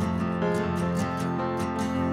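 Live acoustic duo music: an acoustic guitar strummed in a steady rhythm, about four strums a second, over sustained keyboard chords.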